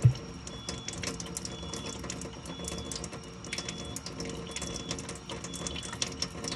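Water from an Enagic Kangen water ionizer running steadily out of its flexible steel spout into a stainless steel sink. A thin stream of strong acidic water from the machine's small hose fills a glass jar. Under the water there is a steady hum, and a short thump comes right at the start.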